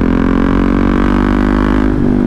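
Single-cylinder engine of a KTM Duke 690 with an Akrapovic exhaust, running at a steady cruising speed and giving a constant droning note that holds its pitch.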